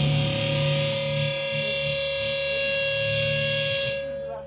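Distorted electric guitar chord held and left ringing through the amp with no drums, a steady sustained tone slowly fading.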